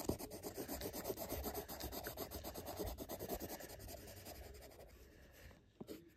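A wooden graphite pencil scratching back and forth on paper in quick hatching strokes, several a second, as an area is shaded in. The strokes get quieter and die away near the end.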